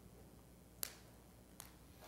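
Near silence broken by one sharp, brief click a little under a second in and a fainter click later: small handling sounds as the priest's hands work at the chalice and host on the altar.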